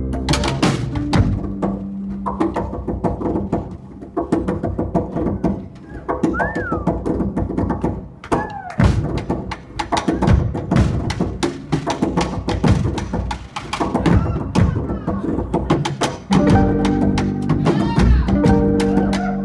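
Live folk band's percussion break: drums and sticks struck in a quick, uneven rhythm, with clacking hits over low instrument tones. A couple of short sliding high notes come near the middle, and about sixteen seconds in, sustained held notes from the band's instruments come back in.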